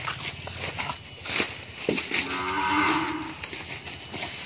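A single drawn-out animal call, about a second long, starting about two seconds in. Under it are the light scrapes and knocks of a metal spoon scooping young coconut flesh from the shell.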